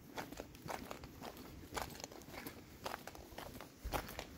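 Footsteps of a person walking at a steady pace on a concrete sidewalk, about two steps a second, with a louder low thump just before the end.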